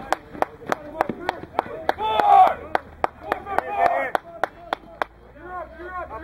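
Hands clapping in a steady rhythm, about three claps a second, stopping about five seconds in. Loud shouting voices break in around two seconds and again around four seconds.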